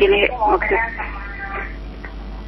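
Speech: a voice heard over a telephone line for about the first second and a half, then a quieter stretch over a steady low hum.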